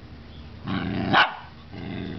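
A small dog growling at another dog, the growl ending in one sharp bark about a second in, then another growl starting near the end.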